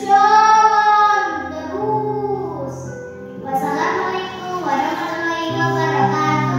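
A young girl reciting a poem in a drawn-out, sing-song voice, holding long notes, over background music with steady sustained chords.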